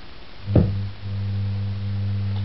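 A steady low hum, broken about half a second in by a short thump, after which the hum carries on unchanged.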